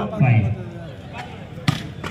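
A single sharp smack of a hand striking a volleyball on the serve, near the end, over a crowd's voices.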